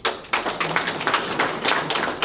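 Audience applauding: a dense patter of many hand claps.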